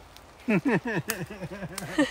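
A woman laughing: a quick string of short, falling bursts that begins about half a second in and runs on to the end.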